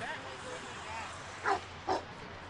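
A dog barking twice, two short barks close together near the end, over faint voices.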